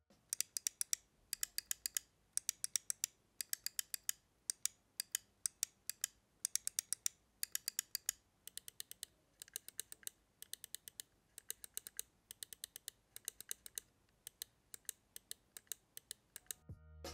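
Gaming mouse main buttons clicked in quick bursts of several sharp clicks, about a burst a second, comparing the LAMZU Maya's Huano Blue Shell Pink Dot switches with the LAMZU Thorn's optical switches. About halfway through, the clicks become noticeably quieter as the other mouse takes over.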